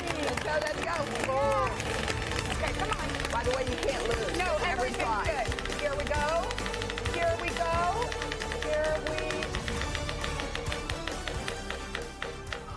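Large prize wheel spinning, its pointer clicking rapidly over the pegs, with music and excited voices calling out over it.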